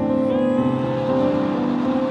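Background music with sustained, held chords, and one brief sharp click right at the start.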